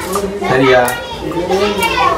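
Children's voices talking and playing, with overlapping chatter throughout.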